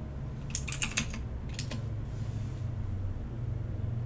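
Computer keyboard keystrokes: a quick run of about half a dozen clicks between half a second and a second in, then a couple more near the middle of the second, over a steady low hum.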